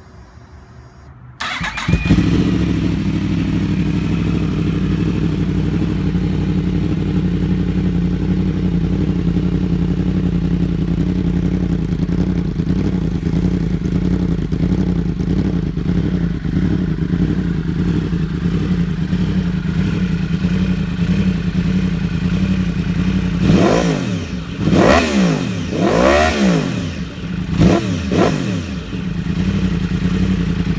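2015 Yamaha R1's crossplane inline-four starting about a second and a half in, breathing through an Akrapovic slip-on exhaust and link pipe, then idling steadily. Near the end it is revved in several quick blips, each rising and falling sharply, before settling back to idle.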